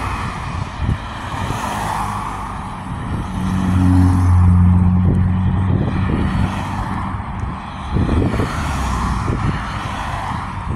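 Road traffic: cars passing one after another, with tyre noise and a low rumble. It is loudest about four to five seconds in, as one car goes by with a steady engine hum.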